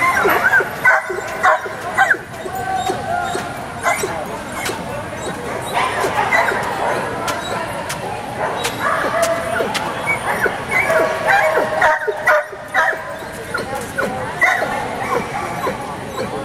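A dog barking and yipping repeatedly in short, sharp calls, with people's voices mixed in.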